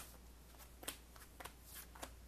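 Sleeved trading cards being laid one by one onto a cloth playmat: a handful of soft taps and slides, each about half a second apart, with a sharper click at the start.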